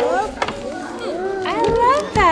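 Young children's high-pitched voices talking and calling out, with no other clear sound.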